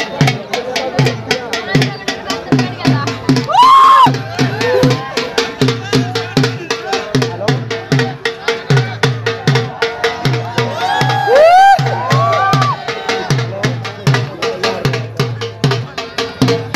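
Dhol drum beaten in a steady, fast rhythm: deep bass strokes about two to three times a second under rapid, sharp taps. A voice calls out in loud, drawn-out shouts that rise and fall in pitch, about four seconds in and again near twelve seconds.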